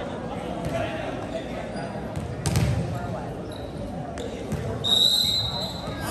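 Gym hall murmur of spectators' voices, with a volleyball thudding on the floor once about two and a half seconds in. About five seconds in a referee's whistle sounds a short, steady high note, the signal for the next serve.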